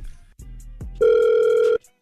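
A telephone ringback tone heard over the phone line as an outgoing call rings: one steady ring starting about a second in and cut off sharply after under a second.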